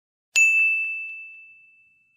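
A single bright ding sound effect struck about a third of a second in, followed by two faint quick taps, its clear high tone ringing on and fading away over about a second and a half.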